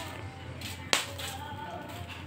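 A single sharp crack about a second in, over faint background music.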